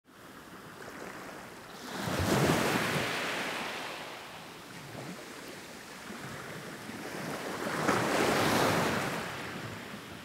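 Sea waves washing onto the shore: two swells of surf, one about two seconds in and one near the end, each fading back between them.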